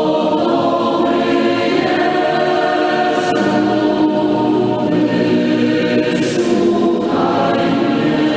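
A choir singing a slow Christian hymn, with long held notes and chords.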